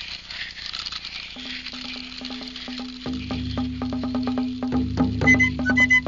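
A dry, hissing patter of rice pouring out of a magic gourd, a cartoon sound effect. Background music comes in under it: a steady low note with rapid clicking percussion, a deeper drone joining midway, and a high whistle-like melody starting near the end.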